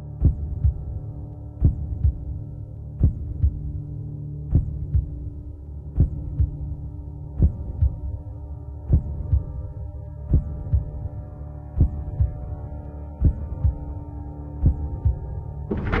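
Soundtrack music: a sustained low drone under a slow heartbeat-like double thump, about one beat every second and a half.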